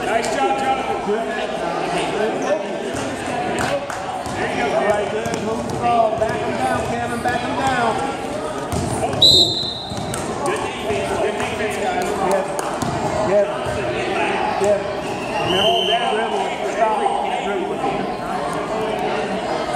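A basketball bouncing on a hardwood gym floor, under steady overlapping chatter from players and spectators. About nine seconds in comes a brief shrill high tone, the loudest sound, and a fainter one follows near the end.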